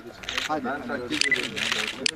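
Several people talking over one another, with a quick run of camera shutter clicks about a second in.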